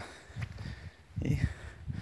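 A man's voice with a pause between phrases, one short word spoken about a second in, over faint outdoor background.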